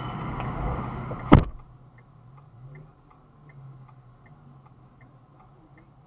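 Steady car cabin noise ends with a single loud thump about a second and a half in, a car door being shut. After that, inside the closed, idling car, the indicator relay ticks steadily, a little under three clicks a second, the hazard or turn-signal flasher left running.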